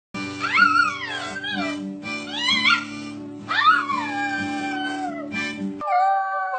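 Music with a steady low beat, over which a dog howls three times. Each howl rises and then slides slowly down, and the last is the longest. The music and howling cut off sharply just before the end.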